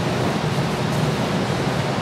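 Steady room noise of a large hall: an even hiss with a low rumble underneath, no distinct events.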